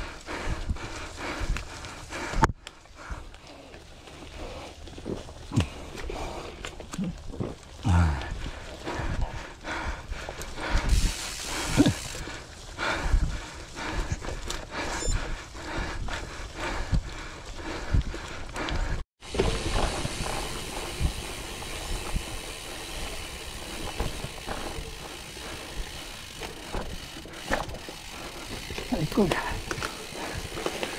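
Gravel bike rattling and clattering over a rough dirt singletrack, with irregular knocks as the tyres hit roots and stones. The sound breaks off abruptly twice.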